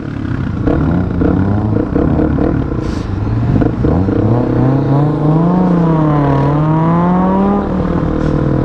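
Suzuki DR-Z400SM single-cylinder motorcycle engine under way at road speed, over rushing wind. About halfway in its pitch climbs as it accelerates, dips briefly, climbs again, then falls off right at the end as the throttle is eased.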